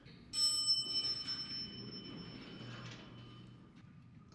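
A single bright bell chime, struck once about a third of a second in and ringing out, fading away over about three seconds.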